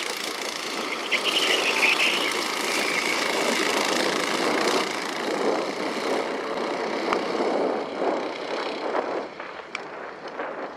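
Go-kart engines running as the karts pass on track. The sound grows over the first couple of seconds, stays steady through the middle, and fades near the end.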